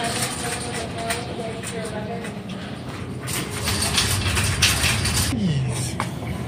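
Busy supermarket ambience: indistinct voices of other shoppers over a steady low hum, with a few short clicks and knocks in the second half.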